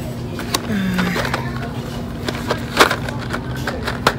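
Cardboard candy boxes being rummaged on a store shelf with metal wire rails: shuffling with a few sharp clacks, the loudest nearly three seconds in. A steady low hum runs underneath.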